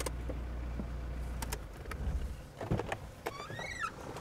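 A car engine idling with a low hum is switched off about a second and a half in. Then come a few sharp clicks and a short squeaky creak near the end as the driver's door is unlatched and opened.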